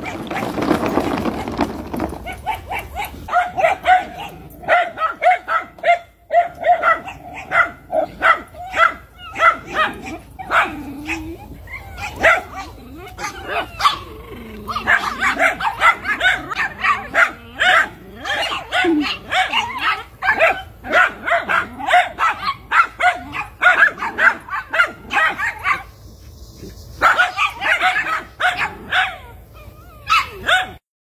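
Miniature schnauzer barking over and over, a steady run of short sharp barks at about two to three a second, with a brief pause a few seconds before the end.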